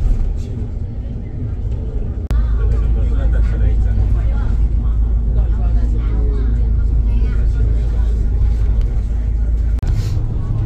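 Steady low engine and road rumble inside a moving shuttle bus cabin, which cuts abruptly about two seconds in and comes back heavier. Indistinct voices talk over the rumble for most of the rest.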